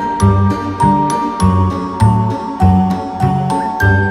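End-credits music: a tinkling melody of sharp, ringing high notes over a steady, evenly spaced bass pulse.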